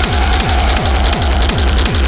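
Fast, aggressive industrial techno: a heavy kick drum on every beat, about two and a half to three beats a second, each hit dropping in pitch, under rapid hissing hi-hats and a distorted synth.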